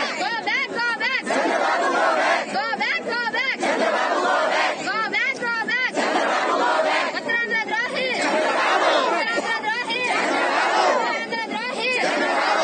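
Crowd of protesters shouting slogans together, the many voices coming in repeated shouted phrases every two seconds or so over a constant din of voices.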